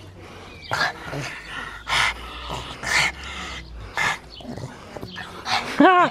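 A pug making short, sharp vocal bursts about once a second while playing with a person's hand. A man's voice begins near the end.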